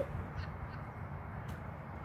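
Faint steady outdoor background noise with one faint click about one and a half seconds in.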